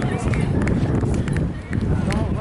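Indistinct talking from people nearby, over a low rumble with scattered short knocks and clicks.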